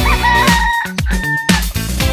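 Upbeat disco-funk music with a steady beat. Over it a rooster crows in two parts during the first second and a half.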